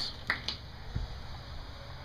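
A few light clicks and a soft knock as someone steps out through a back door, over a low steady hum.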